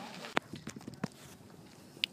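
A quick, irregular run of sharp knocks and clicks over about a second, the loudest near the start, then a faint outdoor background and one more sharp knock at the very end.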